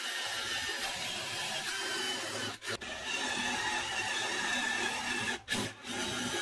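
DeWalt cordless drill running a step bit through a thin wooden plate, its motor running steadily with a faint whine over the cutting noise. It stops briefly twice, about two and a half seconds in and again near the end, then starts again.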